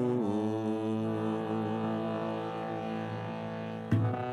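Harmonium holding a steady chord while a male voice glides down onto a long held note that slowly fades. A sharp click and a fresh chord come right at the end.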